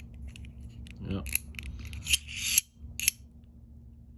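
Reate Exo-M gravity knife with a titanium handle and a double-edged Elmax blade being closed: a brief metallic sliding scrape and three sharp clicks as the blade is drawn back into the handle and snaps into place.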